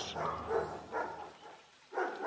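A dog barking a few short times, each bark fainter than the last, dying away about a second and a half in.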